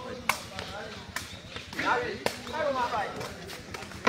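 Sepak takraw ball kicked three times in a rally, sharp smacks about a second apart, starting with the serve, with spectators' voices calling out between the kicks.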